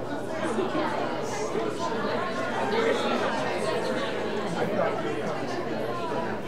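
Many overlapping conversations from an audience in an auditorium, a continuous hubbub of chatter with no single voice standing out.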